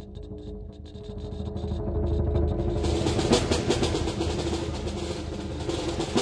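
Snare drum and conga tremolo rolls, rising from soft to loud with a sharp accent about three seconds in, then easing off.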